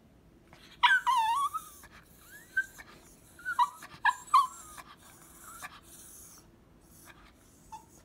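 Small terrier-type dog whining: a high, wavering whimper about a second in, the loudest sound, followed by several short whimpers over the next few seconds and one faint one near the end.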